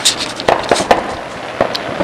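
Fireworks going off: several sharp pops and bangs at irregular intervals.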